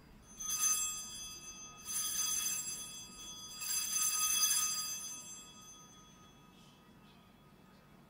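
Altar bell rung three times, each ring a bright, many-toned chime left to ring out, the last the longest, fading by about six seconds in: the bell rung at the elevation of the consecrated host.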